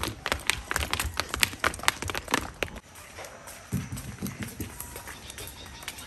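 Footsteps of several people walking briskly down stone steps, quick slapping footfalls about four or five a second, thinning out after about three seconds.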